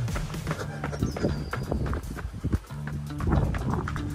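Background music with held bass notes that step from one pitch to another and a regular beat.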